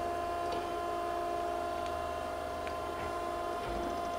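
Okamoto ACC-1224-DX surface grinder running with its hydraulics and grinding-wheel spindle on and the table traversing under power cross-feed: a steady machine hum with a high, even whine, a few faint ticks, and a low thump near the end.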